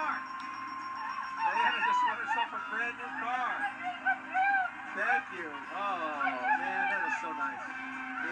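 A woman crying and wailing with emotion, in long rising and falling sobs, over game-show music, played through a television speaker.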